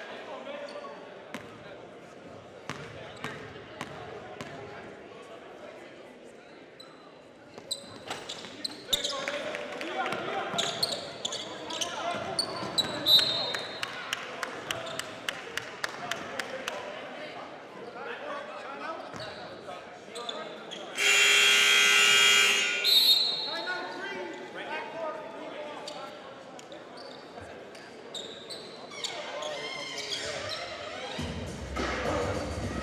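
Basketball game in an echoing gym: a ball bouncing on the hardwood court among scattered voices. About twenty seconds in, a scoreboard horn sounds loudly for about two seconds.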